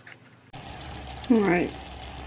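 Diced apples sizzling steadily in syrup in a saucepan on a gas stove, cooked down; the sizzle starts suddenly about half a second in. Partway through, a brief loud voice sound falling in pitch rises over the sizzle.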